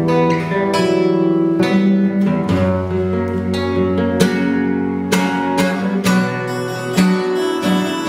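Guitar playing an instrumental piece: plucked chords and single notes, each ringing on into the next.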